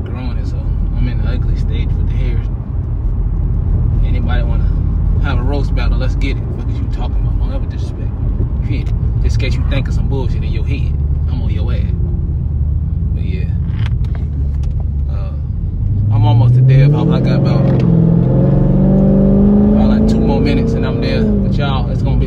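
Car cabin while driving: a steady low engine and road rumble. About three-quarters of the way through, the engine note rises as the car accelerates.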